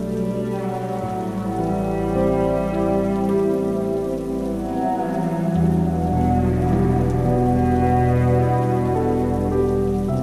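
Slow, soft cello and piano music over a synth pad, mixed with a steady sound of falling rain. Long held notes change every second or two, and a deeper bass note comes in about five and a half seconds in.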